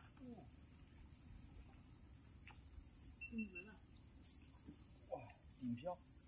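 Faint, steady, high-pitched chirring of insects, an unbroken drone. A few brief, low vocal sounds come and go around the middle and near the end.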